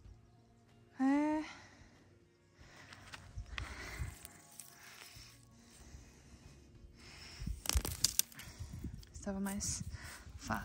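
Hand scraping and crumbling hard, dry soil around seedlings, an uneven scratchy rustle with a few sharp knocks near the eight-second mark. A short hummed vocal sound comes about a second in, and another near the end.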